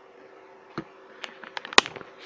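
A string of about seven sharp, irregular clicks and snaps from handling the alligator-clip connections of a battery circuit feeding a lit bulb. The clicks come closer together and louder near the end, with a faint steady hum underneath.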